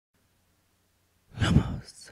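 Silence, then a short, breathy sigh from a person about a second and a half in.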